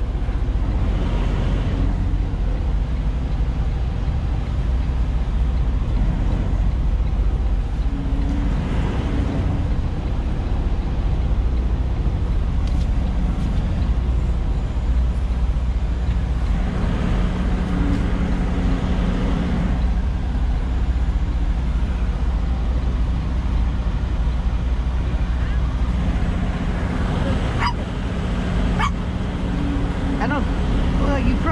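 Semi truck's diesel engine running, heard inside the cab as the truck moves slowly, with the engine note rising for a few seconds midway through. A few clicks near the end.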